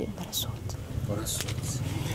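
A pause in a woman's speech over a steady low background rumble, with a short breath and a faint murmur in the middle.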